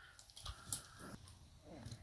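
Faint, scattered clicks of a plastic transforming toy robot being handled and folded, with quiet between them.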